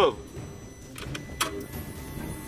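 A few short, sharp clicks about a second in as the key is turned on a Lamborghini V10: the starter does not crank the engine, it only gives a 'tec'. The car has stalled and won't start, and the owner fears the engine is damaged, though it could be an electrical fault.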